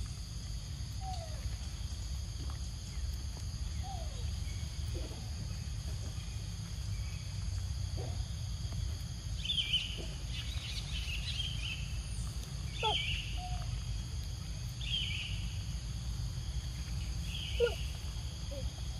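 Outdoor ambience: a steady low rumble under a faint, steady high insect drone. A few short falling chirps come in the first half, and from about halfway a bird calls again and again, roughly every one to two seconds.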